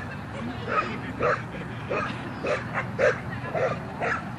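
Bearded collie barking repeatedly as it runs, short barks at about two a second.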